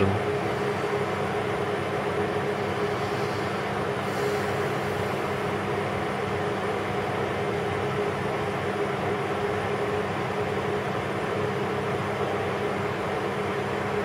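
Steady room hum from running machinery, an even noise with a few constant low tones that stay unchanged throughout, plus a faint brief hiss about four seconds in.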